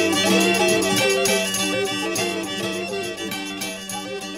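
Instrumental medieval and Renaissance-style French folk music: a melody moving over a steady low drone, growing gradually quieter through the second half.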